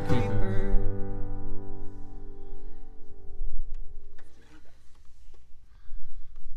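The last sung word of a folk duet, then a final acoustic guitar chord ringing out and fading over about four seconds, followed by a few faint clicks.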